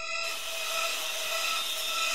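A sawing, cutting sound effect, a blade grinding steadily through something for about two seconds, over held background music tones.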